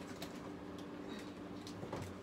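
Faint scattered clicks and rustles of objects being handled while a stuck iPad stand is pulled free, over a steady low hum.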